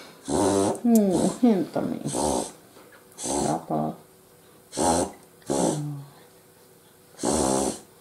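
A dog vocalizing in a run of short pitched calls, their pitch sliding up and down, several close together in the first two seconds and then about five separate calls spread through the rest.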